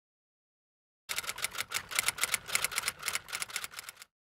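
Typewriter keys clattering in a quick, slightly uneven run of clicks, about seven a second. It starts about a second in and cuts off suddenly near the end.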